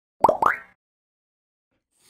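Logo sound effect: two quick pops about a fifth of a second apart, each rising in pitch.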